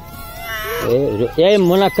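A rhesus macaque gives a high, wavering squeal during the first second, amid a troop squabbling over food.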